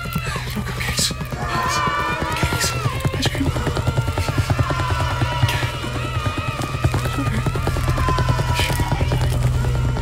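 Dramatic background music with a fast, driving beat and a wavering melody, punctuated by loud crashes a few times.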